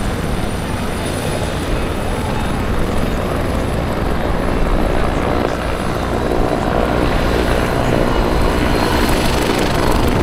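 Goodyear Zeppelin NT airship's piston engines and propellers running steadily as it passes low overhead, growing a little louder toward the end.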